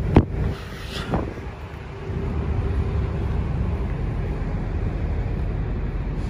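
Steady low outdoor rumble of wind on the microphone and vehicle noise, with a sharp click just after the start.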